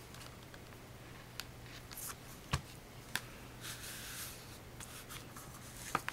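Hands pressing and smoothing canvas fabric onto a chipboard page: a few light taps and clicks, and a rustle of fabric and board about four seconds in, over a low steady hum.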